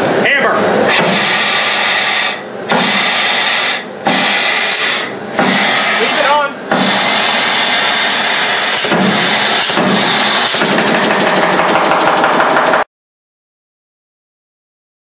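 1880 Allen portable pneumatic riveter running on compressed air while driving 3/4-inch rivets into a locomotive smokebox-to-boiler joint: a loud, steady rush of machine noise broken by a few short pauses. For the last two seconds it turns into a rapid rattle of blows, then cuts off suddenly.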